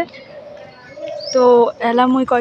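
A faint, steady bird call for about the first second, then a woman talking.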